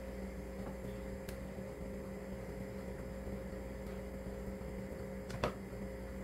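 A faint, steady mechanical hum, with a couple of short clicks from a ladle against the pot or a plastic container as thick broth is ladled out.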